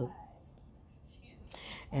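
A pause in a woman's speech: quiet room tone, with a short breathy intake of breath shortly before she speaks again.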